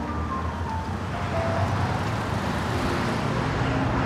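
Road traffic: a car passing on the street, its tyre and engine noise swelling through the middle and easing off near the end over a low rumble, with faint music underneath.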